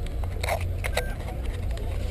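Steady low rumble inside a limousine cabin, with a few short clicks or knocks about half a second and a second in.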